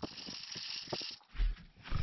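Worm compost rustling and scraping over a wire-mesh sifting screen as the screen is worked and emptied, a steady hiss for about a second, followed by two dull low thumps.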